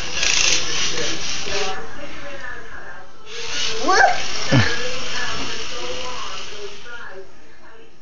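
Battery-powered toy drill whirring in two runs, the first about a second and a half long and the second a few seconds later lasting about four seconds, each starting and stopping abruptly. A young child talks over it.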